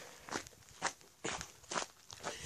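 Footsteps on gritty ground, about four steps roughly half a second apart.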